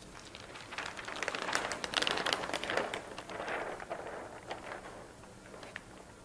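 A large sheet of thin Kitakata paper rustling and crackling as it is handled and lifted with both hands, swelling to a dense crackle about two seconds in, then fading to a few scattered crinkles.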